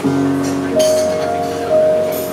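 Grand piano playing: a chord struck at the start, then new held notes about a second in and again near the end, with the light clink of china and cutlery.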